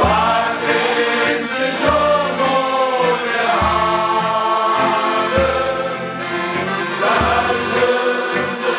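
Men's shanty choir singing a slow song in several parts, accompanied by two accordions, with a low bass note sounding about every two seconds.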